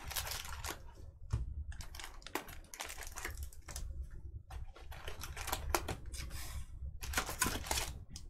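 Foil trading-card pack wrappers crinkling and crackling in irregular bursts as a stack of Panini Illusions football packs is handled.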